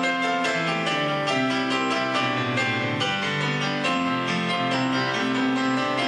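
Piano playing an instrumental passage of held chords over a moving bass line, the chords changing about every second.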